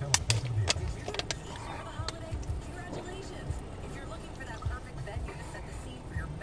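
Indistinct speech and music heard inside a stopped car's cabin over a low steady rumble, with several sharp clicks in the first second or so.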